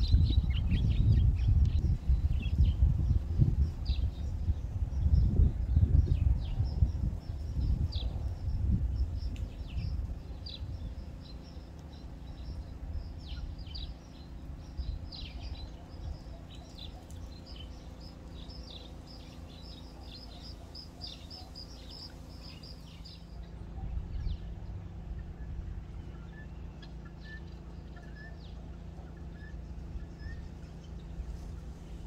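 Many short, high bird chirps over a low rumble. The rumble is loud for the first ten seconds and then dies down. The chirping thins out a little after twenty seconds in.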